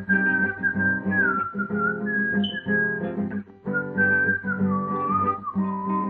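A person whistling a melody over a strummed nylon-string classical guitar. The whistled tune holds high notes at first, then steps down to lower notes in the second half. The strumming breaks off briefly about three and a half seconds in.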